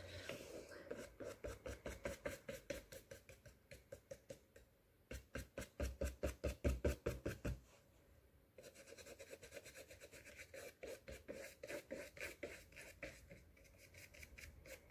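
Paintbrush flicking short strokes of acrylic paint across a stretched canvas: faint, quick scratchy brushing, about four or five strokes a second, in several runs with short pauses. The run in the middle is the loudest.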